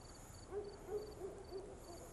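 Faint series of low hooting calls, about five in a second and a half, from a bird, over steady faint chirping of crickets.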